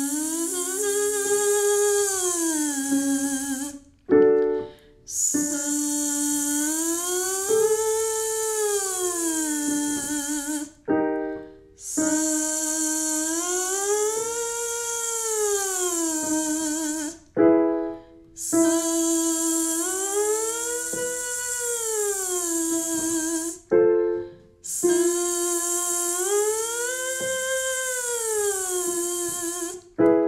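A woman's voice buzzing a sustained voiced 'zzz' in a vocal siren warm-up. Each phrase holds a note, then slides up and back down in pitch. It repeats about five times, each time starting a little higher, with a short piano cue between phrases giving the new starting note.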